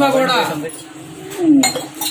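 Metal plates and serving utensils clinking, with one sharp clink about one and a half seconds in, under a man's voice.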